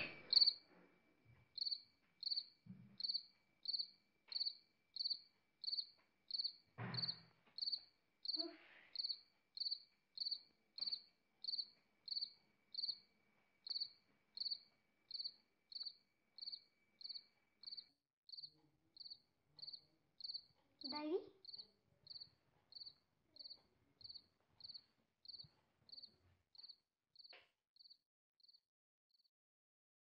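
A cricket chirping steadily, about two short high chirps a second, faint, with a few soft knocks or rustles in between.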